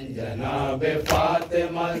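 Group of men chanting a noha, a Shia mourning lament, in unison, with a single open-hand slap on the chest (matam) about a second in, keeping the beat of the recitation.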